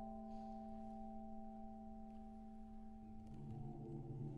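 Chamber choir singing a cappella, holding a long steady chord; lower voices come in on a new, lower note a little after three seconds in.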